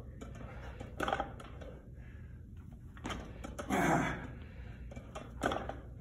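Faint knocks and clinks of a loaded barbell handled on a wooden lifting platform between reps, with a short vocal sound about four seconds in.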